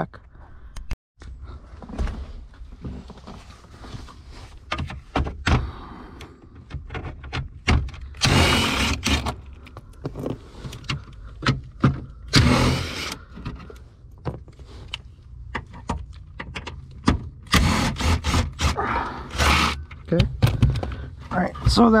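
Makita cordless power tool running in short bursts to back out the 10 mm bolts holding a car's lower dash panel, with the longest group of bursts near the end. Between the bursts come clicks and knocks from handling the tool and the plastic trim.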